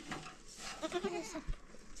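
A young goat kid bleating once, a short wavering call about a second in, followed by a single knock.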